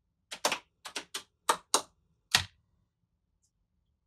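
Allen-Bradley GuardLink guard-locking safety switches clicking as their solenoid locks engage one after another: about eight sharp clicks over roughly two seconds, unevenly spaced. The switches lock little by little because a built-in delay staggers the command from tap to tap to prevent a current surge.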